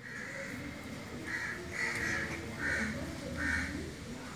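A bird calling four times in the background, short calls about two-thirds of a second apart.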